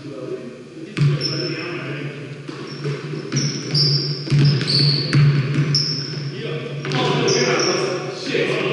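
A basketball bouncing on a hardwood gym floor, a few separate thumps that echo in the big hall, with short high sneaker squeaks from players running on the court.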